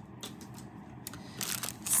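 Clear plastic bag crinkling as it is picked up and handled, starting about a second and a half in.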